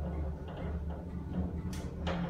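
Steady low hum of a 1984 Montgomery hydraulic elevator arriving at a floor, with a short sharp click near the end.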